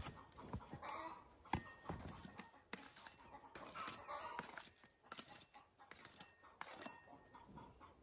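Faint rustling and scraping of seed-starting mix being raked level by hand over a plastic seed tray, with scattered small clicks and knocks. Chickens cluck faintly in the background.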